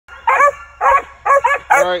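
A young Mountain Cur squirrel dog barking up at a caged training squirrel: five short, loud barks in quick succession.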